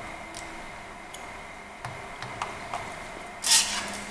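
Faint small clicks and handling sounds of fingers snapping antenna wire connectors onto a laptop wireless card, with a brief scraping rustle near the end.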